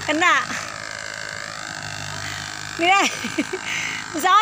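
Two short vocal exclamations with gliding, falling pitch, one just after the start and one about three seconds in. Under them runs the steady low hum of a mini excavator's engine.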